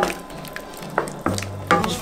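Wooden spatula stirring shrimp in a thick coconut-milk curry sauce in a pan, with a few sharp knocks of the spatula against the pan and a light sizzle from the sauce.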